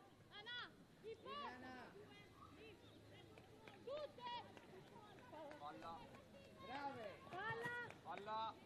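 Faint shouted calls from several players on a football pitch, short separate cries, a little louder near the end.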